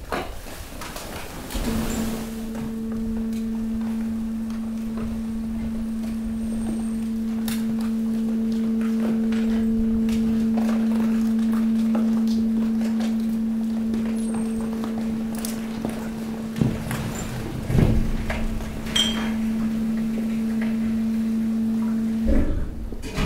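Hydraulic pump of a stationary waste compactor running with a steady low hum, starting about two seconds in, as the ram pushes mixed waste into the container. Plastic, cardboard and debris crackle and knock throughout, with a few louder thuds near the end.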